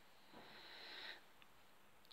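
Near silence: room tone, with a faint soft hiss lasting under a second near the start.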